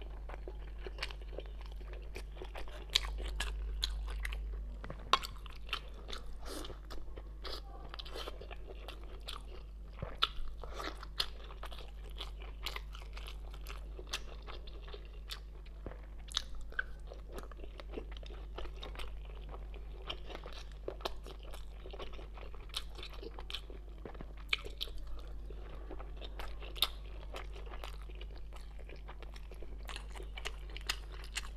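Close-miked chewing and wet mouth sounds of someone eating thin-skinned steamed buns (baozi) filled with chive, egg, glass noodles and wood ear mushroom, with frequent sharp, irregular clicks and smacks. A faint steady low hum runs underneath.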